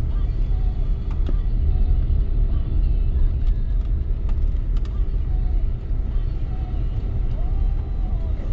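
Steady low rumble of a car's engine and tyres, heard from inside the cabin while it drives slowly.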